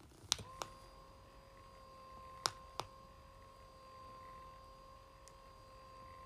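Electric massage cushion switched on: two quick clicks of its button, then its motor starts a faint, steady whine. Two more button clicks come about two seconds later while the motor keeps running.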